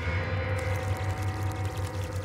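A steady low droning hum, even throughout, with faint higher steady tones above it.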